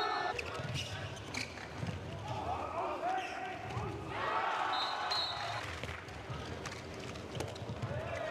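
Indoor handball play: the ball bouncing and being struck on the court in a series of thuds, with voices shouting.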